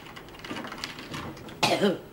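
A woman coughs once, sharply, near the end, after a swig of harsh home-brewed liquor.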